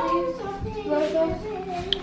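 A toddler singing wordlessly in a sing-song voice, long wavering held notes, with a brief click near the end.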